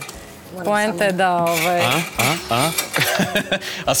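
A large kitchen knife slicing on a wooden cutting board, with a few sharp knocks and clinks of utensils, under people's voices.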